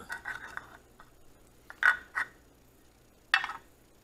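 Handling of a small black plastic project-box lid on a table: a flurry of light clicks, then two sharp plastic clacks close together about halfway through and one more a little later.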